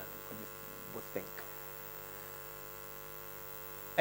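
Steady electrical mains hum from a lecture-hall sound system, with a few faint ticks about a second in.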